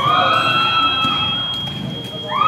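One long, high-pitched yell that rises at the start and then holds, slowly falling in pitch, over the chatter of a crowd.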